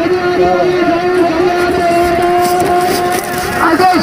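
A voice shouting one long, high, held call that lasts about three and a half seconds and breaks off near the end, over other shouting voices.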